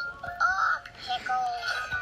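A children's TV music jingle with voices, played back from a screen's speaker.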